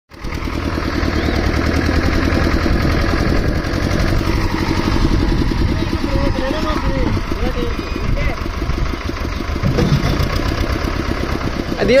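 Escorts tractor's diesel engine running hard under load, pulling a loaded sugarcane trolley up a muddy bank, with a steady fast low firing beat. Faint shouts come through the engine noise about halfway through.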